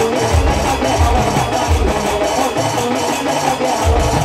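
Live jasgeet folk devotional music: barrel drums beating a steady rhythm under fast, even high percussion and a melody line. The drum strokes drop away about two and a half seconds in and come back at the end.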